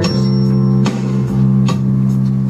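Roland electronic keyboard playing an instrumental passage with a bass-heavy, guitar-like sound: held low notes, with a new note struck about a second in and again near the end.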